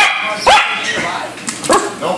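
Yorkshire terrier puppy yapping at fish in an aquarium: three short, high-pitched barks, each rising sharply in pitch, at the start, about half a second in, and a fainter one near the end.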